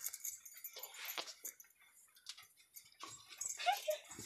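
Faint scattered knocks and rustling, with a short animal call near the end.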